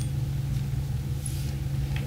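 A steady low hum with two faint, brief squeaks of a marker writing on a glass lightboard, one near the start and one a little past halfway.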